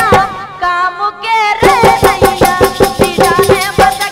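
Bundeli folk song music: a wavering lead melody, joined about one and a half seconds in by a fast, steady run of percussion strokes.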